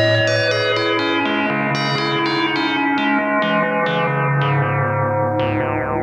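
Synthesizer music: a quick repeating run of notes, about three a second, each one bright at its start and quickly dulling, over a sustained bass that steps to new pitches. A brighter note comes near the end.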